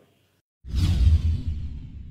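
Whoosh sound effect of a TV channel's logo sting, starting about half a second in after a brief silence: a deep rumble under a hiss that sweeps down in pitch and then fades away.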